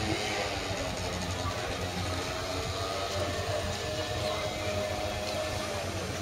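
Outdoor town street sound with a motor vehicle engine running steadily nearby.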